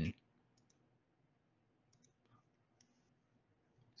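Near silence broken by a handful of faint, short clicks scattered through the pause.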